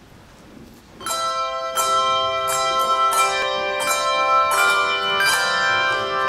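Handbell choir ringing, starting about a second in: several bells struck together as chords, each note ringing on while new strokes follow every half second or so.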